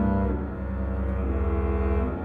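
Two double basses bowing long, low sustained notes together, with a change of note about half a second in.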